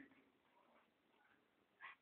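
Near silence: a pause between sentences of a man's speech, with only faint room tone.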